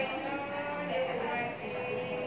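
A man's voice, drawn out in long held pitches and slow glides.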